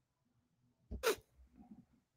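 A single short burst of a man's voice about a second in, between stretches of near silence.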